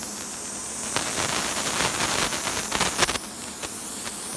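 Small hydrogen–oxygen torch flame burning at a brass tip with a steady hiss, with irregular crackling through the middle.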